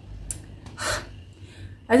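A woman's single audible breath about a second in, a short rush of air with no voice in it, before she starts speaking again near the end.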